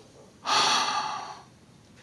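A person's heavy breath, about a second long, starting about half a second in.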